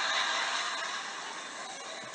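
Low murmuring and laughter from a small audience, fading away.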